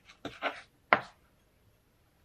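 Kitchen knife cutting through a kiwi and striking a wooden cutting board: a few quick knocks in the first half-second, then one sharp knock about a second in.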